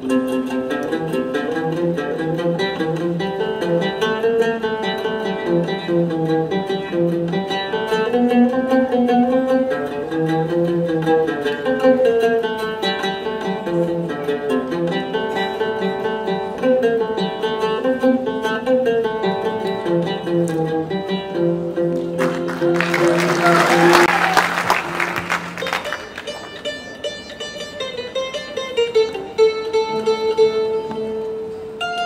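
Ensemble of ouds and other plucked lutes playing a melody together, the notes moving quickly. Near the end a loud burst of noise covers the playing for about three seconds, after which the instruments continue more softly.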